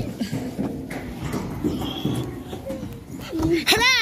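Young child's voice making play noises, ending in a loud, high-pitched squeal near the end.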